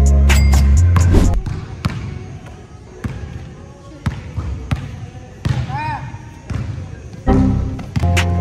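Basketball dribbled on a hardwood gym floor, a bounce about every second, with a brief squeak about six seconds in. Background music with heavy bass plays for the first second, cuts out, and comes back near the end.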